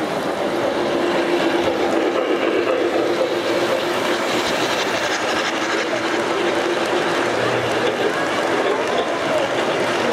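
O gauge model passenger cars rolling past on three-rail track: a steady rumble of wheels with a held humming tone through most of it, over a hall's background chatter.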